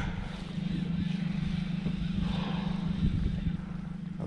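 Boat motor running steadily at low trolling speed, a constant hum under a hiss of wind and water.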